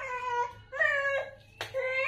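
A toddler whining in two drawn-out, high cries that fall slightly in pitch, with a third starting near the end and a single sharp tap about one and a half seconds in.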